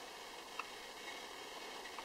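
Quiet room tone: a faint steady hiss, with one tiny click about half a second in.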